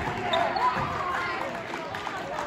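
Excited voices of the players calling out and chattering as they huddle on a gymnasium court, echoing in the hall, with a few thuds on the wooden floor.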